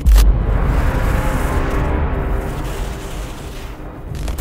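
Edited sound effect over a glitch transition: a sudden deep boom at the start, then a dense rumbling noise with music underneath that slowly fades over the next few seconds.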